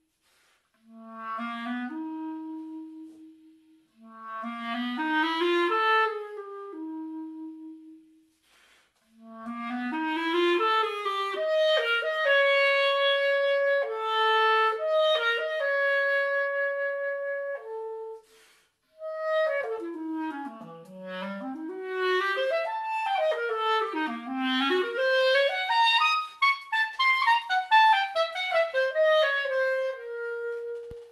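Solo clarinet played unaccompanied: short rising phrases broken by brief pauses, then long held notes through the middle, then fast runs that swoop down into the instrument's low register and climb back up.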